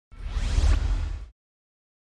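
Whoosh sound effect for a logo intro, about a second long, with a heavy bass and a rising sweep, then it cuts off suddenly.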